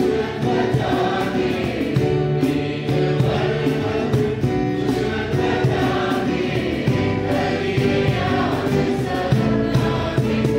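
A mixed choir of men and women singing a hymn, accompanied by strummed acoustic guitars and a cajón keeping a steady beat.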